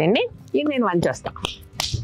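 People talking, followed by several sharp clicks or taps in the second half.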